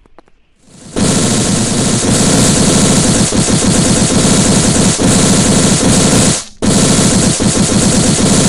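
Loud cartoon sound effect: a very rapid, dense rattle like machine-gun fire, starting about a second in, with one short break about six and a half seconds in.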